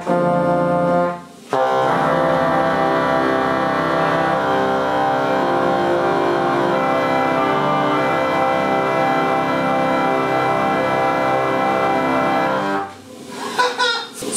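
Church pipe organ playing sustained chords: a chord that breaks off just over a second in, then a full held chord with deep bass notes for about eleven seconds that cuts off suddenly near the end. The rebuilt organ is not yet tuned.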